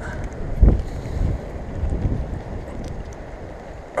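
Wind buffeting the microphone in low rumbling gusts, the strongest about a second in, over the steady rush of stream water.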